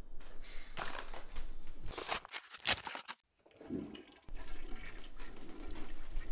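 A toilet flushing, broken by a short silent gap about halfway through.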